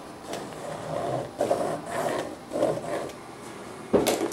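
Felt-tip marker scraping in short strokes as it traces around a wooden rib form on the plastic film covering an aluminum sheet, ending in a sharp click as the marker is set down on the metal.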